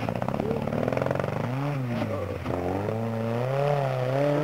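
Rock-crawling buggy's engine revving hard under load as it climbs over rocks. The pitch rises and falls several times and dips briefly about two and a half seconds in, then climbs again; to an onlooker it doesn't sound too well.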